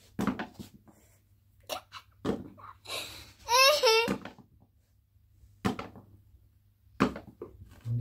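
A young girl's short, high-pitched laugh about halfway through, the loudest sound. Around it come several sharp taps and knocks from small objects being flicked and struck on the floor in a children's game, over a low steady hum.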